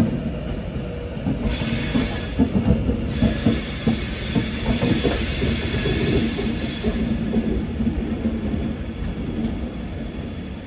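Avanti West Coast Class 390 Pendolino electric train pulling out and drawing away, its wheels knocking over the rail joints and pointwork under a steady rumble. A high thin wheel squeal comes in about a second and a half in and fades out near the end.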